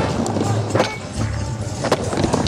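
Music over a skateboard rolling on a vert halfpipe ramp, with two sharp knocks, one a little under a second in and one near the end.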